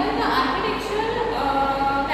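A woman's voice speaking, with some words drawn out into long, held tones.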